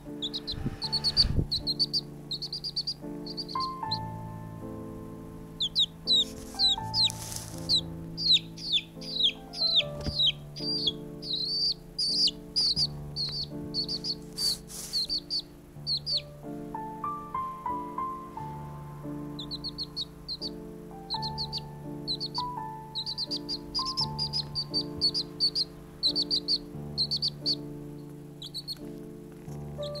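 A baby chicken chick peeping repeatedly: short, high, falling chirps in quick runs, pausing for a few seconds in the middle. Soft background music with sustained notes plays throughout.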